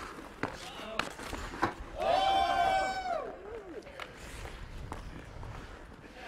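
Hockey sticks and puck clacking on an outdoor rink, a few sharp knocks in the first two seconds, then a person's loud, long held yell lasting about a second.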